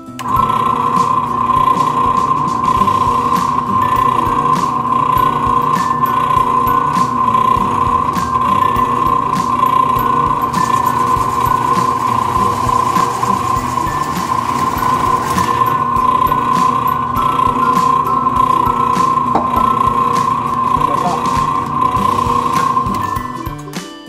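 Benchtop drill press running with a steady high whine while its hole saw cuts through a cedar fence-picket board; the sound stops near the end.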